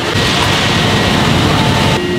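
Steady noise of industrial bakery production-line machinery, with a thin steady high whine.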